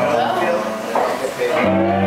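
Amplified blues harmonica played through a hand-held microphone: wavering, bent notes that settle into a held low chord about a second and a half in.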